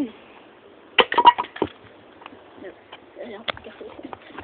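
Small metal toy truck hitting concrete about a second in with a sharp clack and a short clatter, then a single further knock later.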